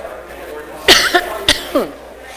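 A person coughing twice, sharp and loud, about half a second apart, over faint room chatter.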